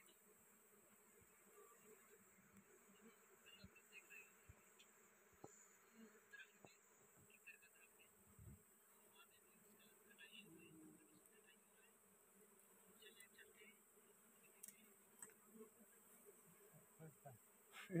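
Faint buzzing of a mass of honeybees swarming over an exposed wild honeycomb.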